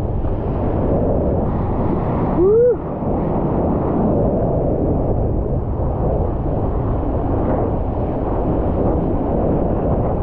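Wind buffeting a GoPro Hero 9's microphone over the rush and slosh of sea water around a surfboard. About two and a half seconds in comes one short call that rises and then falls in pitch.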